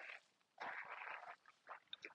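Faint, brief crunching shuffle of footsteps on gravel, a little under a second long, otherwise near silence.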